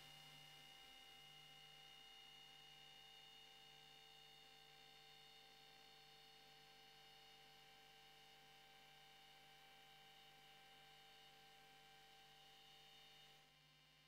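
Near silence: a faint, steady electrical hum with a few thin high tones. It drops slightly in level shortly before the end.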